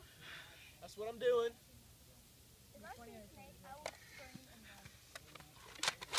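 Faint voices in short snatches, one louder about a second in, with quiet between and a few sharp clicks near the end.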